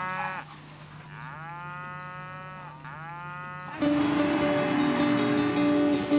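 Cattle mooing: a call trails off at the start, then comes a long moo and a shorter one straight after it. Music comes in about four seconds in.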